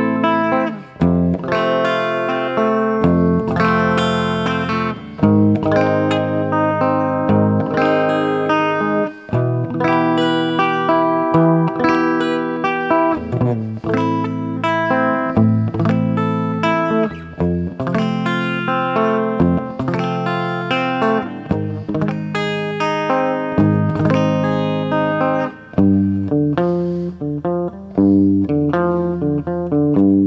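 Electric guitar with P-90 pickups strumming a palm-muted chord pattern, starting on an E minor barre chord, with the chord changing every second or two. Near the end it moves to a quicker pattern of single notes.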